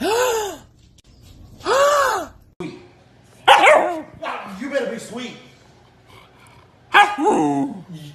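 Siberian husky vocalizing: two short calls that rise and fall in pitch, at the start and about two seconds in. From about three and a half seconds on come longer, wavering 'talking' yowls, with another falling call near the end.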